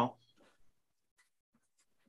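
The last syllable of a woman's word cuts off right at the start, then near silence with a few faint, short taps.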